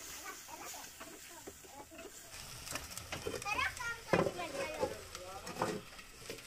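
Hens clucking in the background, a run of sweeping calls in the second half, while a ladle stirs in a clay pot. A sharp knock about four seconds in.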